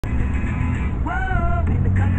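Vehicle engine and road rumble heard inside the cabin, with music playing, including a sung note held for about half a second just after the first second.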